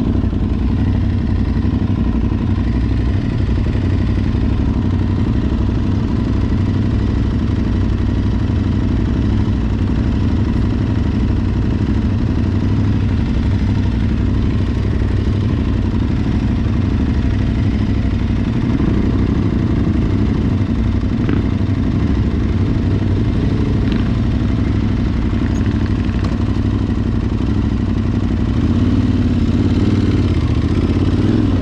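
Adventure motorcycle engine running steadily at low trail speed, heard from the rider's own bike, with a few light clicks and rattles over rough ground.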